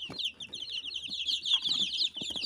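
A brood of young chicks peeping continuously, many short high chirps overlapping one another.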